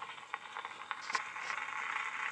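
Edison Home cylinder phonograph playing the start of a wax cylinder: surface hiss and crackle come through the horn with scattered clicks and grow steadily louder before the recording begins.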